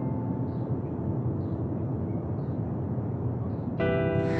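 Soft sustained background-score notes fade away, leaving a steady ambient noise bed with faint high chirps about once a second. New sustained music notes come in just before the end.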